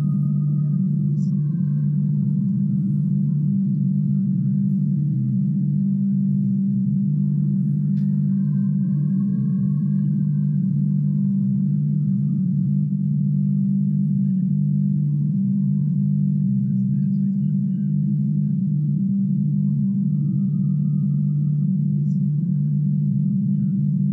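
A steady low drone of two held tones, with faint higher tones shifting above it.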